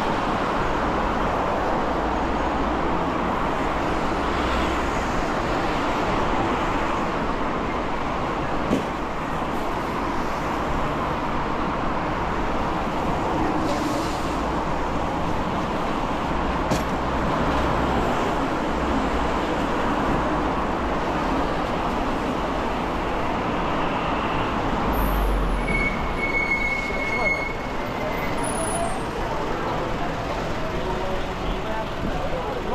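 Continuous traffic noise from cars and vans passing on a busy multi-lane city street. A short high-pitched squeal sounds near the end.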